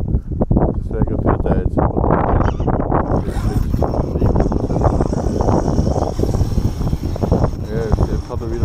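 Heard from the truck's own onboard camera, an Arrma Kraton 8S EXB 1/5-scale RC truck drives off on a gravel track, with tyres crunching over the gravel and wind rumbling on the microphone. From about three seconds in, a steady high whine from its brushless drivetrain joins as it picks up speed.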